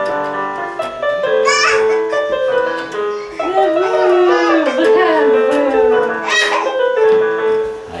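An electronic keyboard played with both hands: a melody of held notes that stops just before the end.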